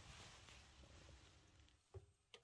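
Near silence: faint room tone, with one brief faint click near the end.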